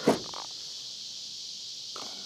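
A steady, high-pitched insect chorus, with a short thump right at the start.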